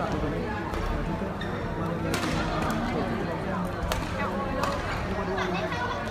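Badminton rally: several sharp racket strikes on the shuttlecock, the loudest about two and four seconds in, over the chatter of voices in a sports hall.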